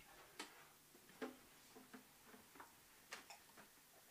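Faint, scattered clicks and knocks, about six of them, from an acoustic guitar being lifted off its stand and its strap put over the player's shoulder.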